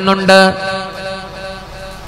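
A man's voice chanting one long held note in a recitation style, loudest about half a second in and then fading away.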